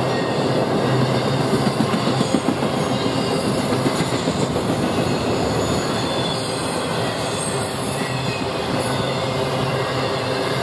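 Freight train of empty intermodal flatcars and well cars rolling past at speed: steady wheel-on-rail noise, with a run of sharper knocks in the first few seconds.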